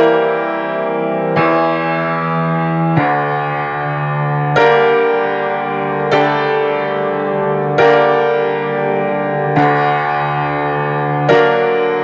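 Piano played with both hands: full chords struck about every second and a half, each one ringing on into the next.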